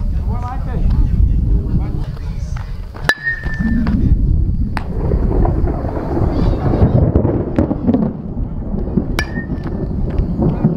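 Baseball bat striking pitched balls in batting practice: two sharp cracks about six seconds apart, each with a short ringing ping, over a steady rumble of wind on the microphone.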